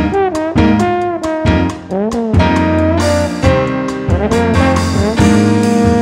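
Jazz quartet of trombone, piano, bass and drums playing an instrumental piece, with several notes sliding up and down in pitch.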